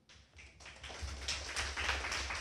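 Applause, many hands clapping, starting about half a second in and building up.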